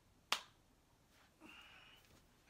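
A single sharp click about a third of a second in, followed by a much fainter short sound with a thin high tone near the end.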